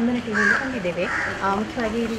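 People talking, with a crow cawing twice in the background, about half a second and a second in.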